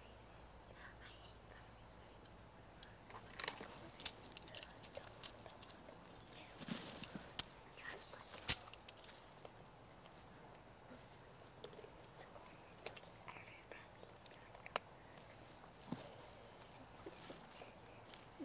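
Banding tool clicking against a metal rivet band as it is fitted to an eaglet's leg: a run of sharp clicks from about three and a half to nine seconds in, the loudest about eight and a half seconds in, then a few fainter clicks later on.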